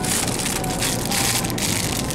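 Plastic bag crinkling and rustling as it is handled, a dense run of quick crackles.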